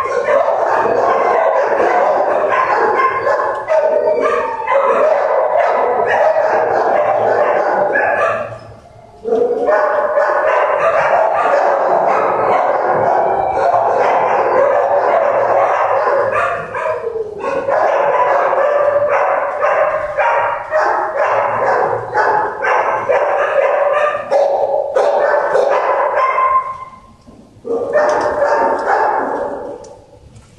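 Many shelter dogs barking at once, a loud continuous din of overlapping barks, with two brief lulls, about 9 seconds and 27 seconds in.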